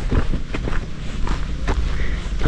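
Several footsteps on a dry dirt road.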